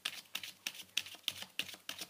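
A tarot deck being shuffled overhand by hand, the cards giving a rapid, irregular run of light clicks, several a second, as small packets are pulled and dropped.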